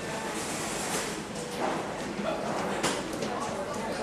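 Indistinct voices of people chattering over steady background noise, with a couple of sharp clicks partway through.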